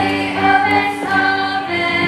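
A group of children singing a folk song together in chorus.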